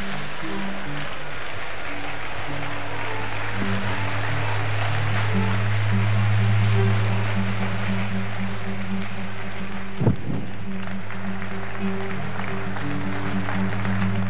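Live band music of long, low held instrumental notes over a steady, dense crowd noise from the audience. There is a single thump about ten seconds in.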